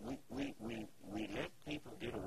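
Laughter: a run of short, pitched ha-ha bursts.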